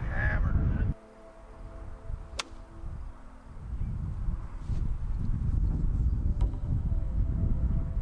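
Wind buffeting the microphone in a low rumble that drops away about a second in and comes back a few seconds later. A single sharp click sounds in the quieter stretch, about two and a half seconds in.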